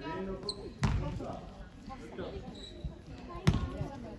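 A basketball bounced on a sports hall floor: two loud bounces, about a second in and again near the end, over people talking in the hall.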